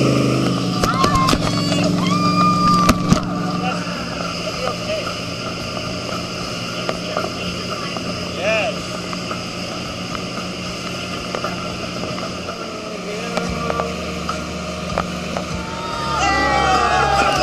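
Tow boat's engine running steadily under the rush of water churned up in its wake, its note dropping lower a couple of seconds before the end. A few short high calls and clicks come in the first few seconds.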